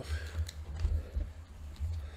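Handling noise from a desktop USB microphone being picked up and moved on a wooden table: low, uneven bumps and rubbing with a few faint clicks.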